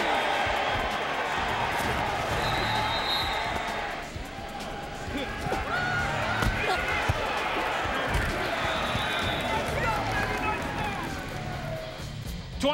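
Field sound from an indoor football game: players and crowd shouting, with repeated thuds of bodies and pads colliding in tackles, under a music bed.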